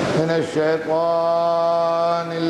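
A man's voice intoning an Arabic opening sermon in a slow chant, settling into one long steady held note after the first half-second.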